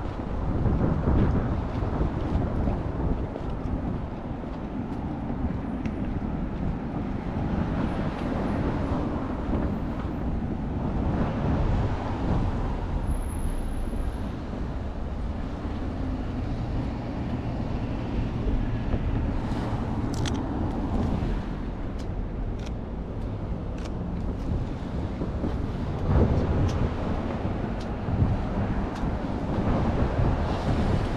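Road traffic passing on the bridge beside the walkway, cars swelling and fading now and then, over a steady low rumble of wind on the microphone.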